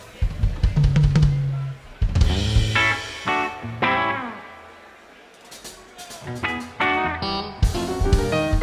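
Live rock band playing: electric bass notes under electric guitar phrases with gliding, bent notes, and drum kit hits. The playing thins to a lull about five seconds in, then picks back up.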